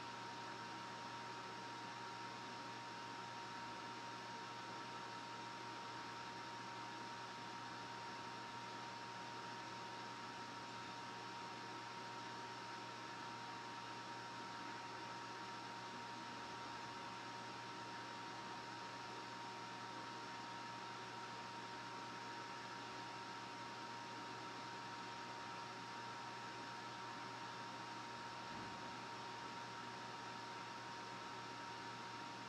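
Quiet, steady hiss with a low hum and a thin high whine.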